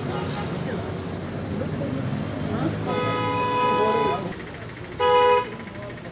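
A vehicle horn honks twice over street noise and people talking: a long blast of just over a second, then a shorter, louder one near the end.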